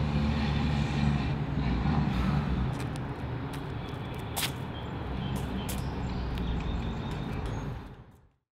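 Steady low rumble of an idling engine, with a few sharp clicks in the second half, the sharpest about four and a half seconds in; it cuts off suddenly at the end.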